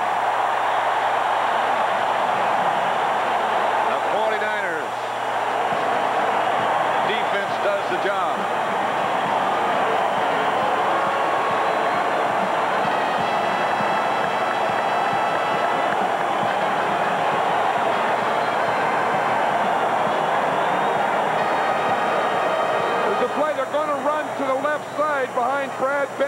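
Large stadium crowd cheering loudly and steadily: the home crowd's reaction to a fourth-down stop of the visiting offence.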